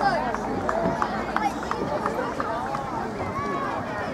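Overlapping shouts and calls from young rugby players and sideline spectators across an open field, a jumble of voices with no clear words.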